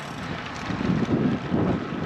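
Wind rumbling and buffeting over the microphone of a camera on a moving bicycle.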